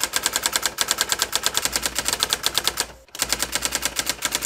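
Typewriter keystroke sound effect: rapid, even clacks at about ten a second, with a brief pause about three seconds in before the clacking goes on.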